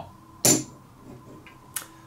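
A single sharp click about half a second in, then two fainter clicks near the end: poker chips being put down on the table for a bet.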